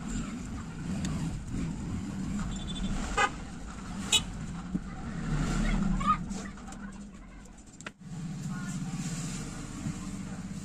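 Background road traffic: vehicle engines running, with a few short sharp sounds about three and four seconds in.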